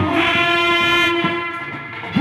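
Indian street wedding brass band, trumpets and trombones, holding one long loud note together; it fades away in the last half-second.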